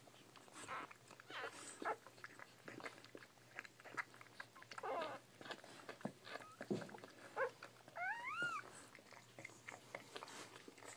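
Bull pei puppies suckling at their mother, with a run of wet smacking and clicking sucks, a brief squeak in the middle and a short rising whimper near the end.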